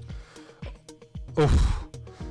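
Background techno with a steady kick drum about twice a second. About 1.4 s in, a man gives a loud, half-second cry of relief on winning a bullet chess game by checkmate.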